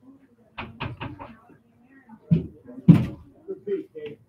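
Two loud knocks about half a second apart, the second the louder, after a brief stretch of voices.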